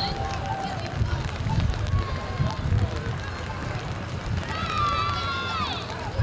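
Outdoor crowd voices over an uneven low rumble, with one loud high-pitched call that bends and drops away near the end.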